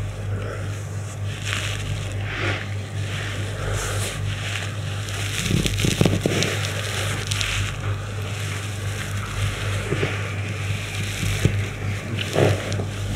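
A steady low hum and hiss of background noise, with soft, irregular rustles of cloth and skin as hands press and knead a body lying on a floor mat.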